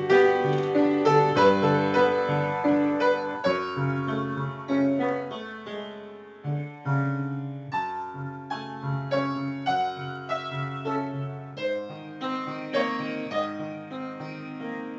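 Solo piano playing a gentle piece: a melody over a steady arpeggiated left hand of broken triads, with a brief breath between phrases about halfway through.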